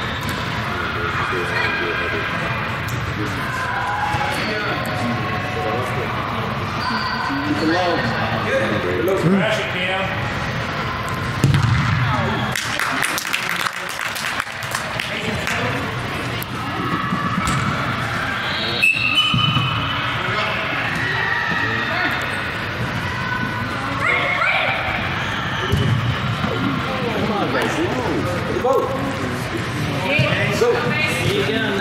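Indoor soccer game in a large, echoing hall: players and spectators calling out indistinctly, with a few thuds of the ball being kicked, the loudest about twelve seconds in.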